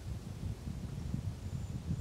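Outdoor background of low, uneven wind rumble on the microphone, with a faint hiss above it.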